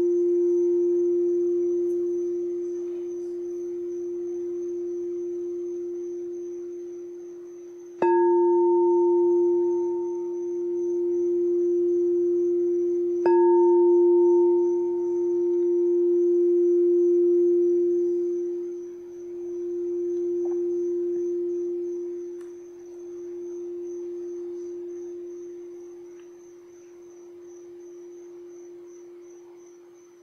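A crystal singing bowl struck with a mallet rings with one steady, pure tone. It is struck again about 8 and 13 seconds in. Each strike's ring swells and dips slowly in loudness, then fades away toward the end.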